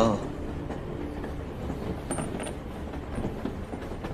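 Steady low rumble of a moving train heard from inside a carriage, with faint rattles and clicks.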